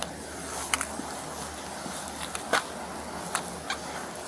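Steady low outdoor background with a handful of irregular sharp clicks or taps, the loudest about two and a half seconds in.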